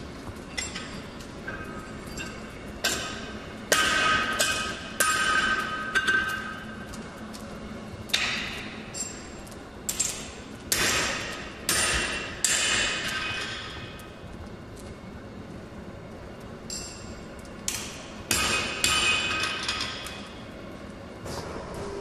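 Steel being struck or knocked against steel at irregular intervals, a dozen or so clanks, each leaving a short high metallic ring.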